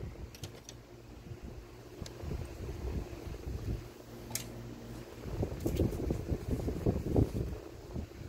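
Handling noise: low rumbling and rustling with a few light clicks as test leads and the radio are moved about, busier in the second half. The battery tube radio gives no hum or static: it is dead even with 67 volts at its switch.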